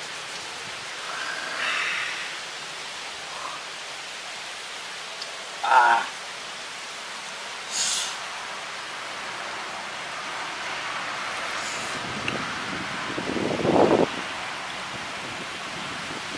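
A steady rushing hiss throughout, broken by a few brief voice sounds, a short sharp high-pitched sound about eight seconds in, and a louder swell of sound a couple of seconds before the end.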